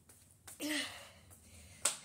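A brief wordless sound from the boy's voice about half a second in, then a single sharp click near the end, the loudest thing heard.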